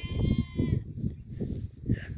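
A lamb bleating once, a wavering call that ends within the first second, with wind buffeting the microphone.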